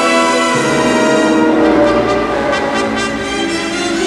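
Orchestral music with brass playing sustained chords; the harmony changes about half a second in.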